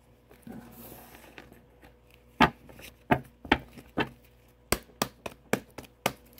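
A deck of tarot cards being shuffled by hand: a soft rustle at first, then a run of sharp, irregular taps and slaps of the cards, about nine of them in the second half.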